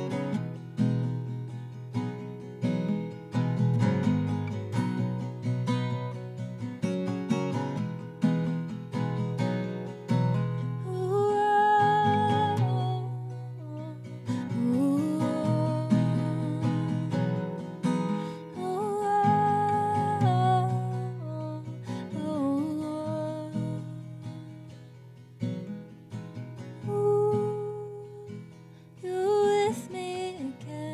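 Solo acoustic guitar played live, joined about eleven seconds in by a woman's voice singing long, wavering held notes in several phrases.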